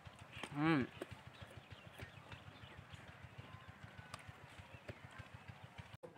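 A man makes one short voiced sound, rising then falling in pitch, about half a second in. After it comes faint, irregular low-pitched ticking and crackle.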